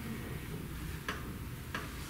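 Quiet hall room tone with two small sharp clicks, about a second in and again near the end.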